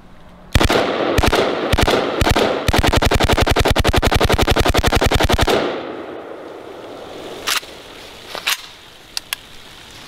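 AK-47 rifle firing 7.62×39 rounds at a water-filled steel barrel: four single shots about half a second apart, then a fully automatic burst of about ten rounds a second lasting nearly three seconds. The sound fades away after the burst, and a few softer clicks follow.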